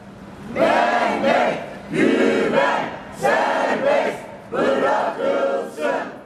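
Crowd of protesters chanting a slogan in unison, four shouted phrases of about a second each in a steady rhythm.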